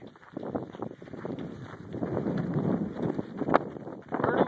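Wind buffeting the microphone of a camera carried while running, with footfalls on a gravel dirt road, and a sharp click about three and a half seconds in.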